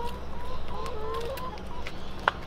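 Domestic hens clucking, a string of short, low calls one after another, with a few sharp ticks among them.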